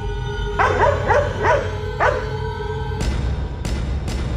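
Dark background music with a dog barking four times in quick succession, about half a second apart, followed near the end by two sharp hits.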